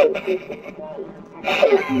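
A person laughing, with a loud burst of laughter at the start, then starting to speak near the end.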